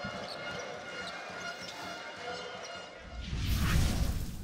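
Basketball arena crowd noise with faint music under it. About three seconds in, a loud, low whoosh-and-boom swells up, an edited closing sound effect, loudest near the end.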